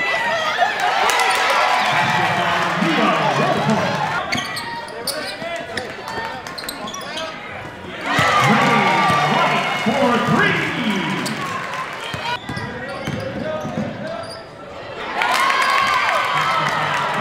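Live basketball game sound in a large gym: a ball bouncing on the hardwood court amid the voices of players and spectators.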